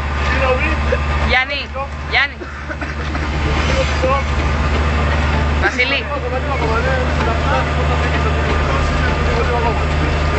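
A vehicle's steady low rumble under several people talking, its level dropping and rising in steps a few times.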